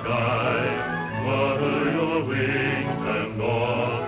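Music from a 1939 film soundtrack: a group of voices singing long, wavering held notes over a steady low accompaniment.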